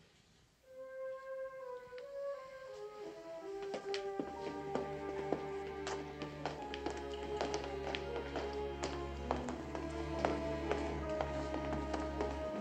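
Orchestral film score: a slow melody of held notes that steps downward, joined about four seconds in by a low sustained bass, with a scatter of light taps through the second half.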